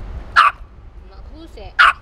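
A dog barking twice, short sharp barks about a second and a half apart, begging for the treat being held out to it.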